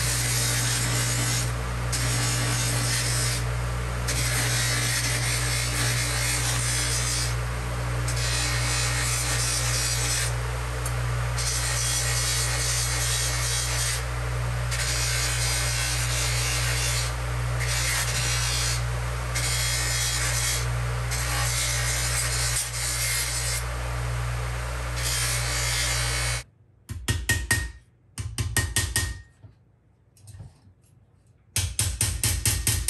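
Handheld electric grinder with an abrasive wheel running steadily against brass, scrubbing solder flux off the metal. The scrubbing hiss drops away briefly each time the wheel comes off the work. The tool stops about 26 seconds in, and near the end there are two short bursts of rapid tapping on metal.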